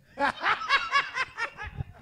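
Laughter: a quick run of short, high-pitched, rising-and-falling laughs, about four a second, dying down after about a second and a half.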